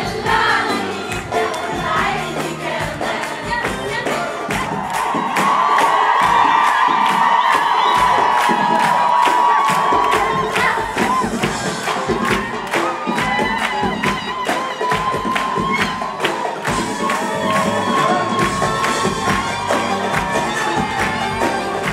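A live Arabic pop band playing, driven by a steady rhythm of hand drums and riq tambourines, with the audience cheering and singing along. A long held note rises above the band about a quarter of the way in.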